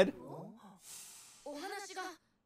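A soft, breathy sigh, then a short, high-pitched spoken phrase from a character's voice.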